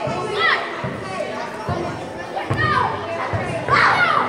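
Children shouting and squealing while playing a ball game in a large hall, with a few short thumps among the shouts.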